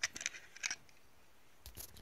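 Small white plastic case being worked open with one hand: a quick series of sharp plastic clicks and rattles in the first second, then another brief clatter near the end.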